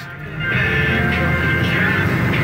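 Cab noise of a 1999 Ford F250's 7.3L Power Stroke V8 turbo-diesel driving along, a steady low drone that grows louder about half a second in. Music from the truck's radio plays faintly over it.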